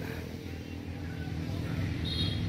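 Steady low engine hum over outdoor background noise.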